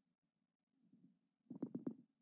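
Near silence, then about one and a half seconds in a brief, low, pulsing voice sound from a person, followed by quiet again.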